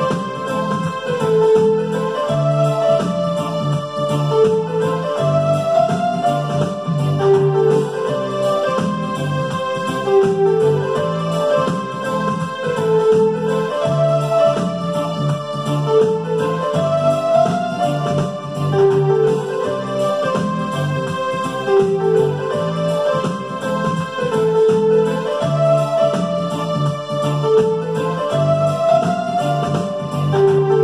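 Electronic keyboard playing a slow melody of held notes over a steady low accompaniment, the phrases rising and repeating every few seconds.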